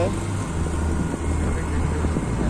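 Motorcycle engine running at steady road speed under an even rushing noise; its low note steps down slightly about half a second in.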